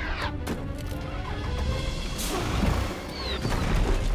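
Film soundtrack: orchestral score over the continuous low rumble and crashes of a volcanic eruption, with a rushing hiss starting about halfway through.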